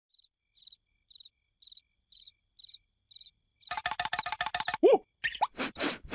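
Cricket chirps, about two a second, in a quiet sewer scene. A little past halfway a fast rattle of clicks runs for about a second, followed by a short falling squeak and a few loud noisy bursts of cartoon sound effects.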